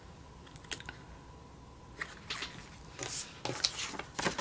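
Faint paper handling: a sticker sheet rustled and glitter header stickers pressed onto a planner page, a few small clicks and then several short crisp rustles in the second half.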